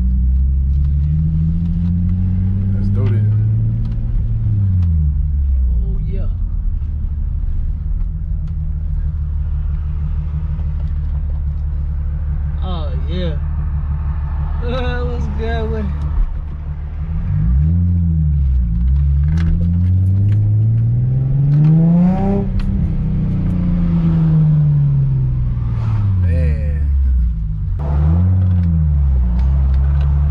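Nissan 350Z's 3.5-litre V6, heard from inside the cabin, freshly tuned. It revs up and falls back through gear changes several times, with a steady stretch in the middle and a brief drop in sound at a shift about halfway through.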